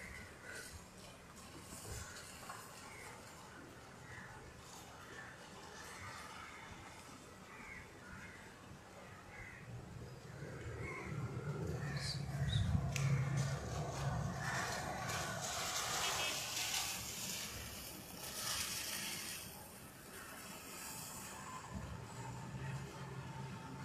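Rain falling with a steady hiss. About halfway through, a low rumble swells for several seconds and fades again.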